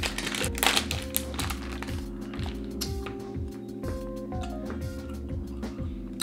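A plastic sweet packet torn open and crinkled by hand, a quick run of crackles in the first second or so, then a few scattered rustles, over steady background music.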